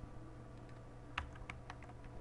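A few scattered keystrokes on a computer keyboard, the loudest about a second in, over a faint steady hum.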